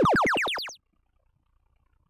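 Electronic field sound cue from the arena speakers: a short, springy upward sweep that stops about 0.8 seconds in. It is the signal that an alliance has activated a power-up.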